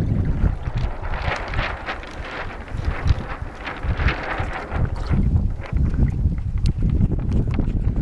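Wind buffeting the microphone, with water washing along the hull of a small sailing trimaran as it comes about. A rougher rushing, with short crackles, runs for a few seconds in the first half.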